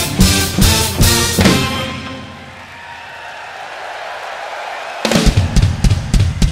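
Rock drum kit playing with the music, with kick and snare hits for about a second and a half. The music then falls to a quieter held passage for about three seconds before the drums come back in with a run of quick hits near the end.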